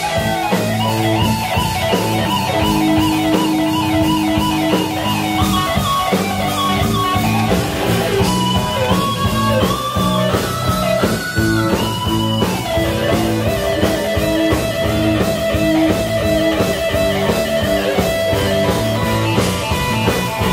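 Live blues-rock band playing: electric guitar and keyboard over bass and drums, with long held notes over a steady beat.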